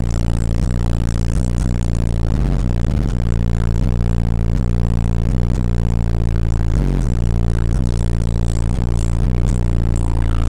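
Heavy sub-bass from a car stereo's three 18-inch DC Audio Level 5 subwoofers, heard from outside the car: deep, sustained bass notes of a rap track that drown out almost everything else in the music.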